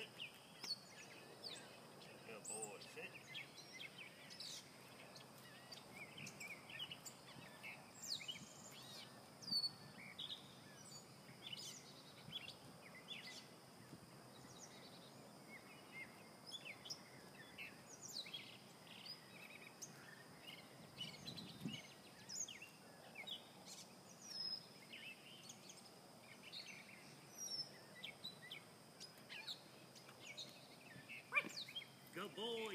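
Faint outdoor background of scattered bird chirps and calls, short and irregular, over a low steady hiss.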